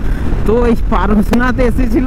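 A man talking, starting about half a second in, over the steady low rumble of a motorcycle cruising at road speed, with wind on the microphone.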